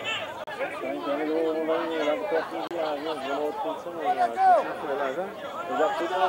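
People talking in indistinct, overlapping conversation.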